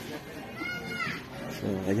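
A child's high-pitched voice calling out once, over a low murmur of background chatter; a man's voice starts near the end.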